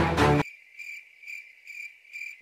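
Cricket chirping in a steady, even rhythm of about two chirps a second, cutting in suddenly as music stops half a second in.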